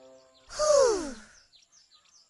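A cartoon child's voice letting out one falling, breathy sigh about half a second in, sliding down in pitch, then faint bird chirps.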